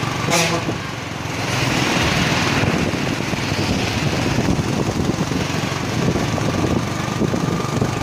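Motorcycle engines running steadily at riding speed, mixed with wind and road noise, with a stronger rush of hiss about two seconds in.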